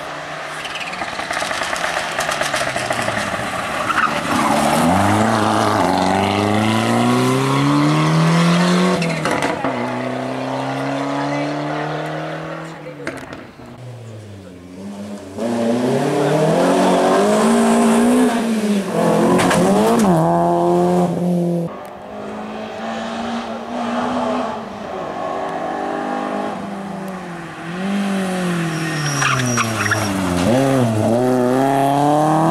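Two rally cars driven hard, one after the other. First a Ford Escort RS Cosworth's turbocharged four-cylinder accelerates toward the camera, its note climbing and dropping back at each gear change. Then, after a short lull near the middle, a BMW E30 318is's four-cylinder does the same through several upshifts.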